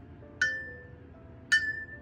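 Two light clinks about a second apart, each with a short bright ringing tone, as small metal or glass swatching tools knock together.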